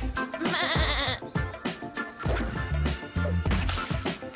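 Upbeat music with a pulsing bass, and a wavering sheep bleat about a second long near the start.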